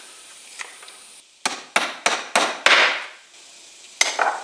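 Five sharp wooden knocks in quick succession, a few tenths of a second apart, as a straight-edge board and clamp are set onto a 2x6 tongue-and-groove plank.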